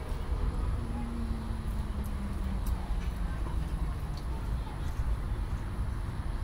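Open-air ballfield ambience: a steady low rumble with faint distant voices and scattered small ticks, and a faint steady tone for about two seconds starting about a second in.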